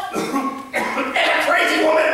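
A man's voice coughing and groaning without words: a short burst near the start, then a longer, drawn-out vocal sound from about a second in.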